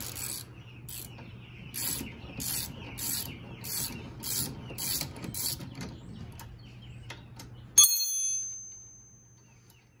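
Ratchet wrench clicking in repeated back-and-forth strokes, about one and a half a second, loosening a nut on a golf cart's front spindle while a second wrench holds the bolt. Near the end, a single sharp metallic clang that rings on and fades over a couple of seconds.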